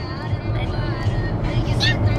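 Steady low road and engine rumble inside a moving car's cabin, with faint voices under it.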